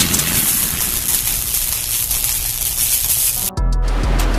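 Electronic logo-sting sound effect: a dense hissing noise wash that eases slightly and cuts off abruptly about three and a half seconds in. A low steady hum follows briefly.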